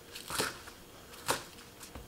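A chef's knife chopping through green onions onto a wooden cutting board: two sharp knocks about a second apart.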